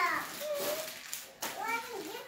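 Children's and girls' voices talking and calling out indistinctly, in short snatches.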